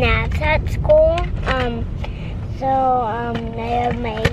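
A young girl's voice talking in a car, drawn out into a long held note about two and a half seconds in, over the steady low rumble of the car's cabin.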